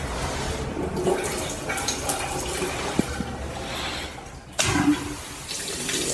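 Water gushing from a bent metal pipe spout into a bathroom sink basin, a steady rush that dips briefly about four seconds in and then comes back louder.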